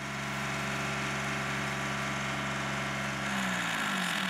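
Compact tractor's diesel engine running steadily as the tractor is eased up into position, its pitch rising slightly near the end.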